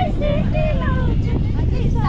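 A person's voice over the steady low rumble of a moving road vehicle.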